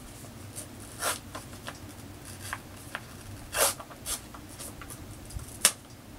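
A Dr. Jart+ sheet-mask pouch being worked and torn open by hand: scattered crinkles and crackles with a few short rips, the sharpest near the end.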